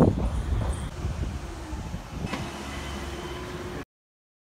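Low rumbling outdoor background noise that starts loud and fades over about two seconds. About two seconds in it changes to a steady low hum with a faint high tone, and it cuts off just before the end.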